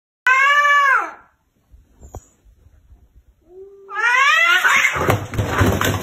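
Two cats fighting, an orange tabby and a white cat, yowling at each other: one loud, short yowl near the start, then a low growling cry about three and a half seconds in that rises into a long, harsh screeching yowl.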